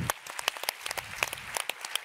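A large audience applauding, a dense run of many hands clapping, with some single claps standing out close by.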